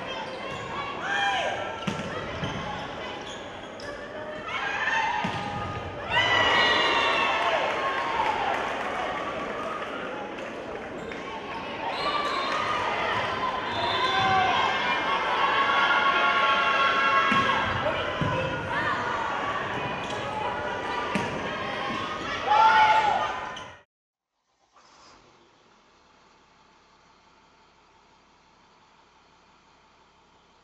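Indoor volleyball gym sounds: overlapping voices and shouts echoing in a large hall, with ball bounces. The sound cuts off abruptly about 24 seconds in, leaving near silence.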